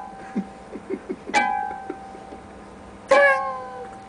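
High, thin plucked notes from the string ends on the headstock of a nylon-string classical guitar. A note plucked just before rings on and fades. Two more are plucked about one and a half seconds in and about three seconds in, each ringing and dying away, with a few faint taps between them.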